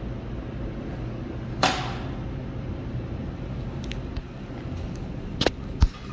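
Elevator hall doors sliding shut, ending in a couple of knocks with a low thump near the end, over a steady low hum. A sharp swish comes about a second and a half in.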